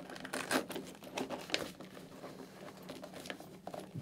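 Fabric-covered foam cheek pad rustling and scraping as it is pulled out of a motorcycle helmet shell, with several small sharp clicks as its snaps come free.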